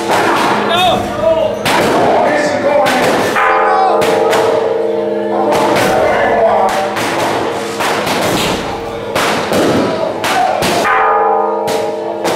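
Loud temple-festival din: a held set of steady musical tones runs under a string of sharp bangs, roughly one every half second to a second, with voices of the crowd mixed in.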